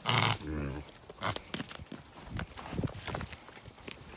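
Juliana mini pigs feeding: a loud, high call right at the start, followed by a lower grunt, then quieter scattered clicks and snuffles as they root and chew in the snow.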